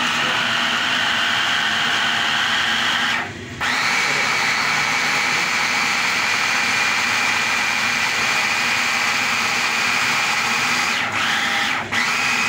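Hand blender motor running on a chopper bowl, blending bananas into a paste. It stops briefly about three seconds in and restarts a little lower in pitch. It cuts out again for a moment near the end before running once more.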